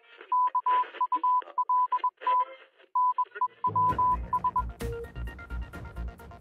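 Channel logo sting: a single high beep tone keyed in short and long beeps like Morse code over a faint radio hiss, then news-intro music with a bass beat and drum hits comes in about four seconds in.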